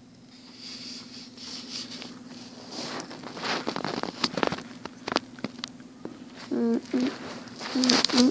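Clicks, knocks and rubbing of plastic toy pieces handled close to the microphone, thickening into a quick run of clicks from about three seconds in, over a faint steady hum. A child's voice sounds briefly near the end.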